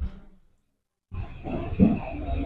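A short low thump, then about a second of dead silence, then a low rumbling background noise with faint voices returning: the sound in the open around a cluster of press microphones during a pause in speech.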